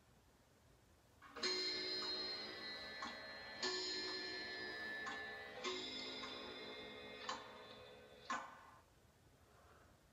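Clock chimes striking midnight: three ringing strikes about two seconds apart, then two shorter strikes.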